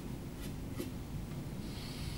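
Snooker cue tip being chalked: short scratchy strokes of the chalk block on the tip, over a low room hum.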